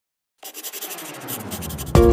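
Pencil scribbling quickly on paper, starting about half a second in and growing louder, then cut off right at the end as loud music with a strong bass note comes in.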